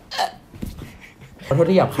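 A man's brief throaty, hiccup-like vocal sound right at the start, made in a mock-choking gesture. About a second and a half in, a man's voice starts speaking.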